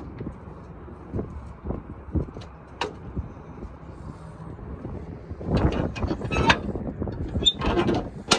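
Low wind rumble on the microphone with a few light knocks, becoming louder and rougher with handling noise and knocks in the last two and a half seconds.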